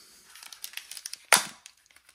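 Plastic packaging being handled: light crinkling and small clicks, then one loud, sharp crackle about a second and a third in.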